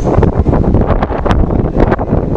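Wind buffeting the camera microphone: a loud, uneven low rumble with a few brief clicks.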